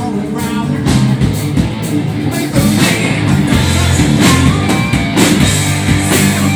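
Live rock band playing loudly: electric guitars, a drum kit and a lead singer.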